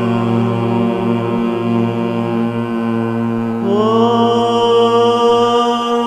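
Devotional mantra chanting set to music: long held vocal notes over a steady drone. About three and a half seconds in, a higher held note slides up into place and carries on.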